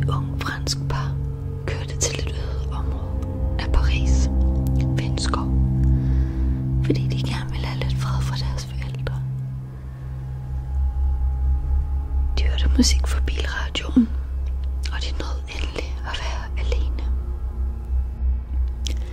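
Whispering voice in short breathy bursts over a sustained low drone of ambient music.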